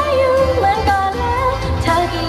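A woman singing a Thai pop song into a microphone over pop backing music with a steady bass line.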